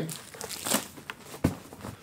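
Plastic packaging crinkling as it is handled, in short, irregular rustles, with one sharp knock about one and a half seconds in.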